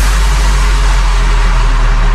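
Progressive house mash-up in a beatless passage: one long, very deep bass note held under a wash of hiss.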